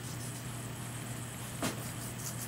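Quiet room tone with a steady low hum, and one brief soft sound about one and a half seconds in.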